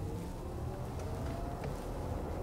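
Audi e-tron Sportback's electric drive motors under hard acceleration, heard inside the cabin: a soft whine rising steadily in pitch over low road rumble. The whine stops about a second and a half in.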